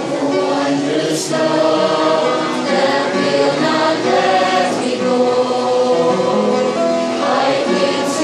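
A mixed choir of young women and men singing together in sustained, steady phrases, accompanied by an upright piano.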